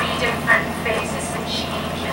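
A woman's acceptance speech at an awards show playing from a computer's speakers and picked up by the room microphone, over a steady low hum.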